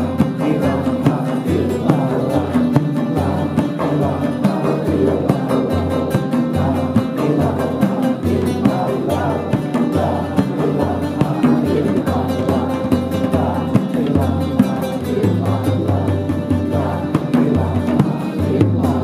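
A large hand frame drum beating a steady pulse of about two strokes a second, with an acoustic guitar strumming and voices singing along.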